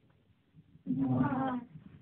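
A single drawn-out animal call, a little under a second long, about a second in, its pitch falling slightly.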